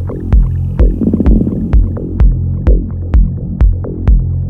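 Electronic music: a steady kick drum about twice a second over a sustained low bass hum, with sharp clicks between the beats. About a second in, a rapidly fluttering texture swells up in the low-mids for under a second.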